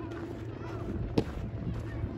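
Distant children's voices carrying across an open park, over a steady low rumble, with one sharp thump a little past the middle.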